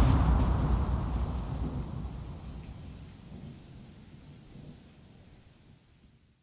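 A low rumbling wash of noise at the close of an electronic music track, fading steadily away to silence by the end.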